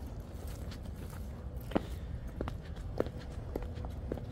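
Footsteps of a person walking, a few light irregular taps starting a little under two seconds in, over a low steady rumble.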